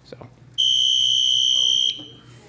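Electronic buzzer on a red-button tabletop box pressed by hand: one loud, steady, high-pitched tone that starts abruptly, holds for about a second and a half, then cuts off.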